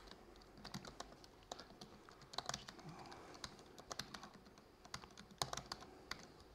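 Faint typing on a laptop keyboard: irregular keystroke clicks, a few of them struck harder.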